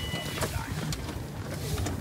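Car cabin noise: a steady low engine and road rumble with faint voices and a brief high beep near the start.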